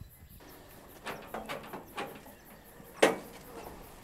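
Faint outdoor background with a few soft knocks, then a single sharp knock about three seconds in.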